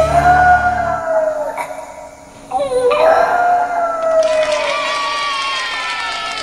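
Small dog howling in long drawn-out howls. The first trails off about two seconds in, the next starts half a second later, and a third overlaps it near the end. The tail of a rock song plays under the first second.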